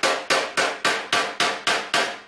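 Rapid, evenly spaced hammer taps on a knockdown punch held against a car fender panel, about three to four strikes a second, each a sharp metallic tap with a short ring. This is paintless dent repair blending: gently knocking down a raised crease around the dent.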